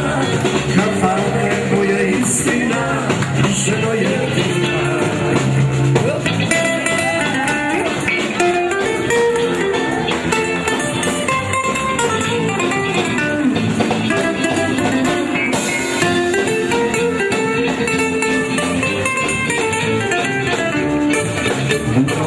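Serbian folk music from a live band, with a singer over it, playing loud and without a break.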